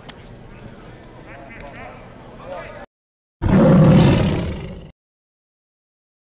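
Shouting and voices on a football practice field, with a sharp smack right at the start. The audio then cuts to silence, and a loud tiger roar follows a little after halfway, lasting about a second and a half and fading out.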